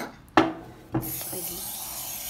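Two sharp clicks, then from about a second in a steady hiss of a cooking-spray can spraying grease into a glass baking bowl to grease it for the cake batter.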